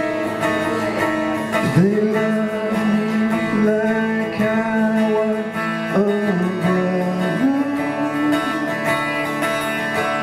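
Acoustic guitar strummed live, with a man's voice singing long held notes over it from about two seconds in.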